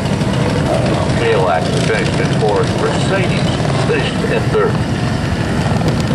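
Several small engines idling and running at low speed, with steady engine noise throughout. Indistinct voices sound over it from about a second in until nearly five seconds.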